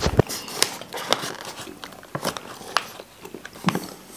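Plastic bag of Klene licorice being handled, giving irregular crinkles and sharp clicks, with some chewing in between.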